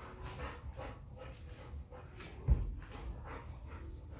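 A pug and a large husky-type dog playing over a plush toy: a run of short dog play noises several times a second, with one heavy thump about two and a half seconds in.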